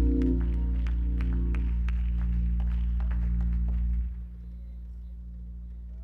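A keyboard holds a final chord that fades, over light clicks about three a second. The music stops about four seconds in, leaving a steady low electrical hum.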